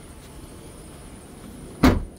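Trunk lid of a 2002 Lexus ES300 being shut, a single sharp thump near the end.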